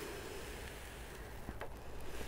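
Dry fine sand pouring from a plastic container into a plastic bucket: a quiet, steady hiss.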